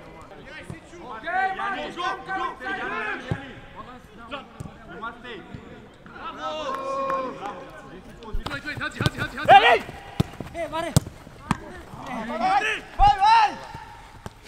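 Football players shouting and calling to each other on the pitch, with several sharp thuds of a football being kicked.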